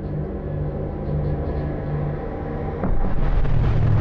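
A steady deep drone over low rumble, which grows abruptly louder about three seconds in into the heavy rumble of an explosion.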